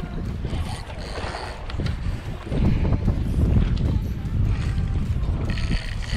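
Wind buffeting the camera microphone as a rough, irregular low rumble, growing stronger about halfway through, with water washing against the jetty rocks.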